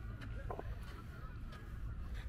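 Outdoor park ambience with a low steady rumble and a brief pitched, honk-like call about half a second in.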